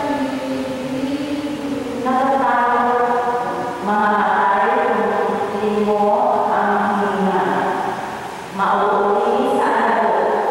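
Voices singing a slow liturgical chant in long held notes, a new phrase starting every couple of seconds.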